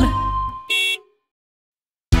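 The last note of a children's song dies away, and then a short cartoon horn toot sounds just under a second in. After it the track goes completely silent.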